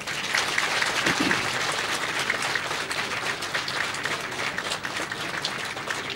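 Audience applauding. It breaks out suddenly and holds strong for a few seconds, then slowly dies down.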